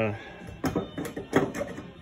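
Several short clicks and knocks, a screwdriver being handled and brought to the car's trunk lock, starting about half a second in.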